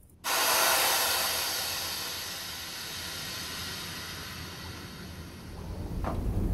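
Liquid finish running and dripping off a freshly dipped wicker chair frame onto a draining grate: a steady hiss that starts suddenly and slowly dies down as the frame drains.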